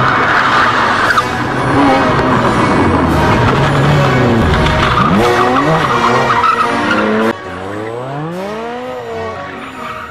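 Race car engines revving, their pitch rising and falling repeatedly, over a dense noisy background. About seven seconds in the level drops suddenly, leaving single clear engine revs that sweep up and down.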